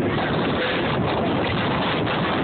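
Steady rushing noise of wind buffeting the phone's microphone over the running of a moving train, heard from an open-air car.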